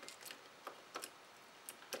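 A few faint, irregular clicks and taps of fingers pressing a small flat battery and its wires into a plastic action-camera housing.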